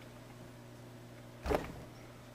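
Quiet room tone with a steady low electrical hum. A brief soft mouth sound comes about one and a half seconds in.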